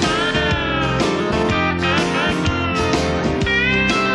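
Live country band playing an instrumental break without vocals: a steel guitar slides notes up and down over electric and acoustic guitars and upright bass.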